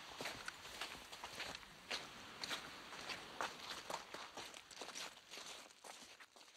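Footsteps, about two a second, over a faint hiss, fading toward the end.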